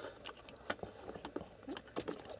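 Faint, scattered small clicks and ticks of a person eating with a spoon.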